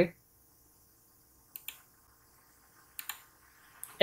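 A few faint mouse clicks in near quiet: a pair about a second and a half in, another pair about three seconds in, and one more just before the end.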